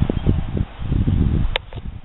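Wind buffeting the microphone in an uneven, gusty low rumble, with one sharp click about one and a half seconds in.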